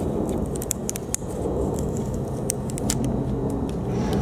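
A steady low mechanical hum, with scattered light clicks and small metallic taps over it.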